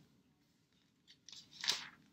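Pages of a hardcover Bible being turned by hand: a few soft paper rustles in the second half, the loudest a single swish near the end.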